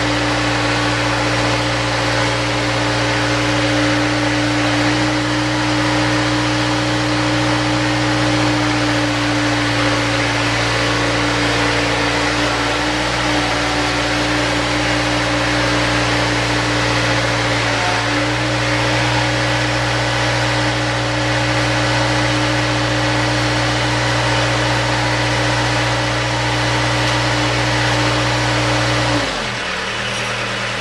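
An all-terrain track chair's drive running steadily as it is test-driven, a loud, even mechanical hum that shifts slightly in pitch about 13 and 18 seconds in. Near the end it drops to a quieter, lower hum.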